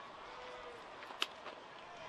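Faint stadium crowd noise, with one sharp crack of a wooden bat hitting a baseball about a second in.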